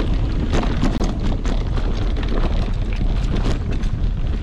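Wind buffeting an action camera's microphone as a mountain bike rides along a dirt singletrack, with a steady deep rumble and frequent rattling clicks from the bike over the rough trail.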